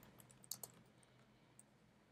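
Faint computer keyboard typing: a few soft keystrokes, clearest about half a second in, over near silence.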